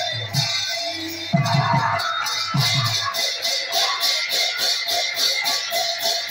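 Pala accompaniment: a drum plays a few strokes in the first half. From about halfway, large brass hand cymbals keep a rapid, even beat.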